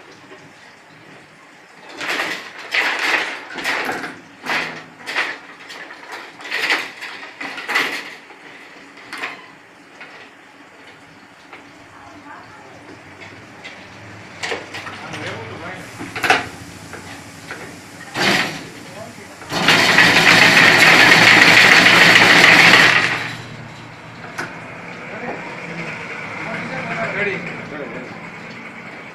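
Wire being worked at a semiautomatic chain-link fence machine: a series of sharp metallic clicks and clanks, then a loud steady rush lasting about three and a half seconds past the middle, the loudest sound.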